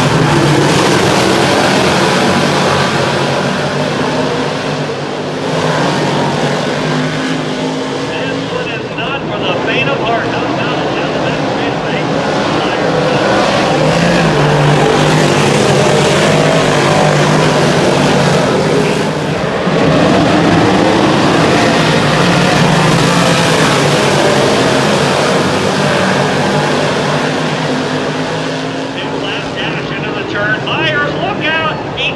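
A pack of 358 dirt modifieds racing, their 358-cubic-inch V8 engines running loud and continuous. The loudness dips and swells as the field goes around the track.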